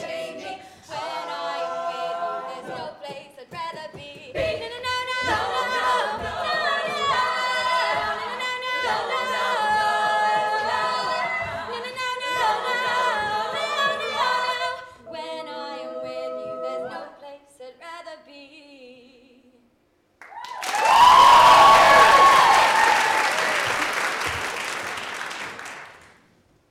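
All-female a cappella group singing in close harmony over vocal percussion, the song ending about 19 seconds in. After a short pause, loud audience applause with whoops and cheers breaks out and is cut off abruptly at the end.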